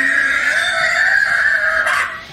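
A long high-pitched cry, held at a nearly level pitch, that cuts off near the end.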